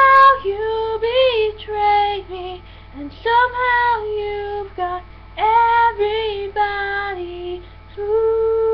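A young woman singing a song alone, in a string of short sung phrases with brief breaks between them.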